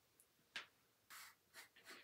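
Faint small handling noises from painting at a table: a light tick about half a second in, then a few brief scratchy rustles of a paintbrush and a plastic paint bottle being handled.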